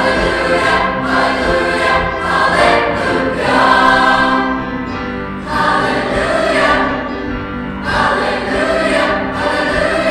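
Large mixed choir of boys and girls singing in sustained phrases, with a short break between phrases about halfway through.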